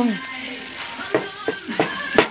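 Broccoli rabe and garlic sizzling in olive oil in a skillet: a steady frying hiss.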